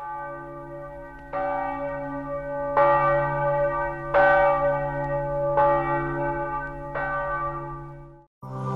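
Bell tones of a programme's closing theme, struck one after another about every second and a half over a low steady drone, five strikes in all, each ringing on.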